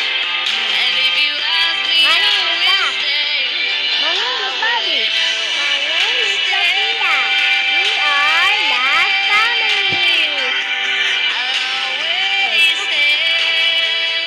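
A song playing: a sung vocal melody with pitch slides over a continuous musical backing.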